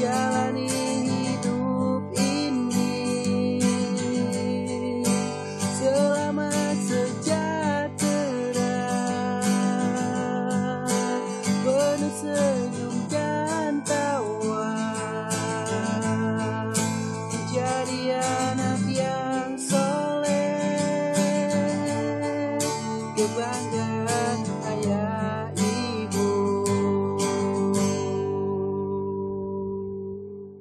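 Acoustic guitar strummed under a melody line in an instrumental passage of a song. Near the end the strumming stops and a last chord rings out.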